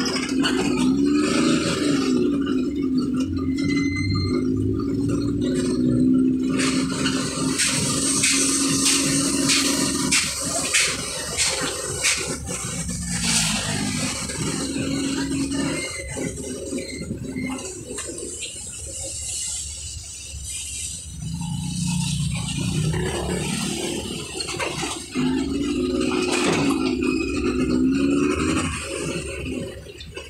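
Motorcycle tricycle running along the road, with its engine note rising and falling and the sidecar rattling.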